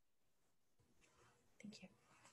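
Near silence: room tone, with a faint whisper-like voice sound near the end.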